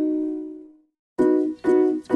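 Background music: a held chord fades out to a brief silence, then the tune starts again a moment later with short, evenly repeated plucked chords.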